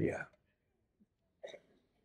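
A man's voice finishes a word, then a quiet pause broken by one short, faint sound about one and a half seconds in.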